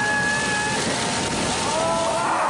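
Steady rush of wind and breaking surf with a boat motor running, and people letting out long, held whooping shouts in the first second.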